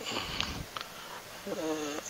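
A man breathes in audibly close to a headset microphone, then says a short, drawn-out "uh" near the end.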